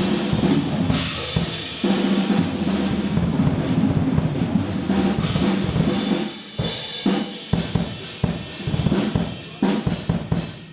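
A band playing in the studio, with a drum kit to the fore (cymbals, snare and bass drum) over bass and electric guitar; about six and a half seconds in the playing thins out to sparser drum hits.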